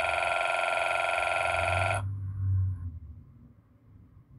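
A loud, steady, trilling electronic ring with many overtones, like a telephone bell sound effect, played from the animation on the computer. It cuts off abruptly about two seconds in. A low thud follows, then it goes quiet.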